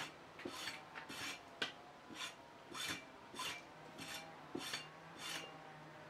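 Hand-made rasping scrapes of metal on metal at the top of a rusty steel barrel, about ten even strokes roughly every half second or so.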